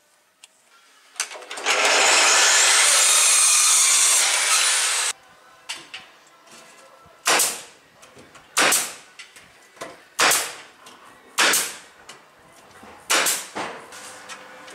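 A corded power drill runs continuously for about four seconds, then stops; a string of about six sharp single knocks on the shed's board sheathing follows, a second or so apart.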